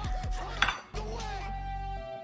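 A kitchen knife clinking and scraping against a plate while slicing a roast, with one sharp clink about a third of the way in.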